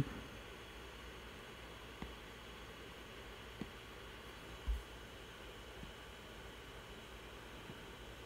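Faint steady hiss of room tone, with a few soft ticks and one low, dull thud about halfway through.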